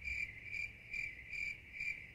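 Crickets-chirping sound effect: a high chirp repeating about twice a second, edited in as the 'crickets' silence gag after a joke that falls flat.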